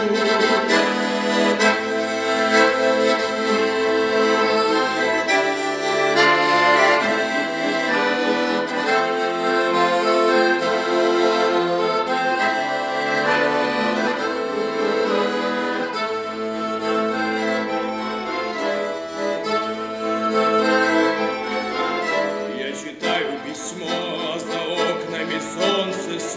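Accordion playing a solo instrumental interlude between verses of a song: chords and melody notes held and moving on the bellows, without a voice. The loudness dips briefly near the end.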